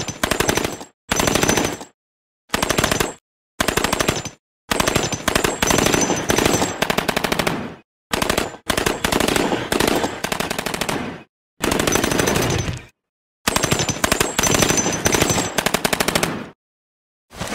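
Thompson M1928 submachine gun sound effect: about eight bursts of full-automatic .45 fire, some under a second and some about three seconds long, each cut off abruptly into dead silence.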